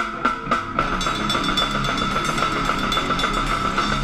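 A live death metal band: a few separate drum-kit hits, about four a second, then about a second in the full band comes in with drums and distorted guitars playing together as a dense, loud wall of sound.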